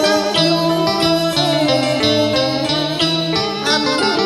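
Instrumental passage of a karaoke backing track: a lead melody over a bass line that steps to a new note about every half second.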